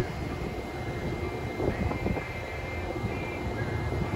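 Electrify America DC fast charger running its cooling fans as a charging session starts: a steady whooshing drone with a faint, thin high-pitched whine.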